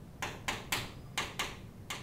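Chalk writing on a chalkboard: about six short scratchy strokes in quick, uneven succession.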